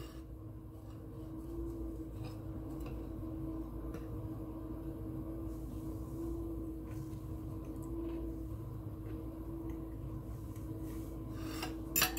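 A steady low hum with faint rubbing and scattered small clicks as a piece of cake is lifted and eaten.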